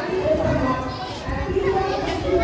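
Children's voices chattering, several talking at once.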